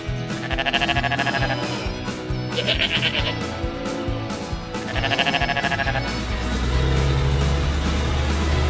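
Sheep bleating three times, each bleat wavering, over background music. A steady low rumble sets in about six seconds in.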